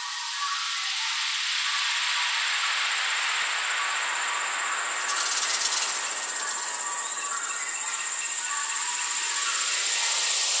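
Psytrance track intro: a hissing electronic noise sweep that slowly opens downward and swells, with a faint steady high tone above it and no beat yet. A brief rattling burst comes about halfway through.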